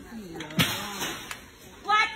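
A woman shouting and yelling, with a short loud noisy burst just over half a second in and a sharp click a little later.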